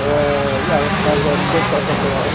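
A person talking over the steady drone of motocross motorcycle engines running in the background.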